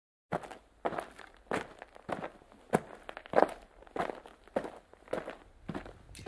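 Footsteps of a person walking at a steady pace on a path, a little under two steps a second.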